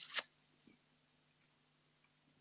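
A short hiss right at the start, then near silence with a faint, steady low hum.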